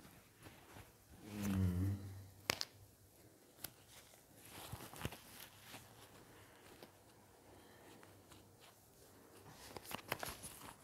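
Soft rustling and handling of a disposable surgical face mask and its paper wrapper as it is taken out and put on, with a few sharp clicks or taps. About a second in there is a short, low voiced hum.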